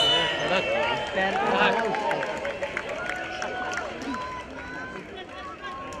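Overlapping calls and chatter from players and onlookers around a football pitch, several voices at once, easing off a little toward the end. A sharp knock comes right at the start.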